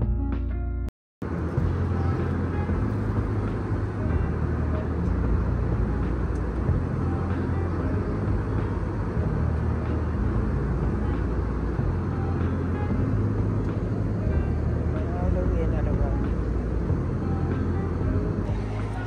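Music for about the first second, cut off abruptly. Then the steady low rumble and rushing air noise of an airliner cabin carries on unchanged.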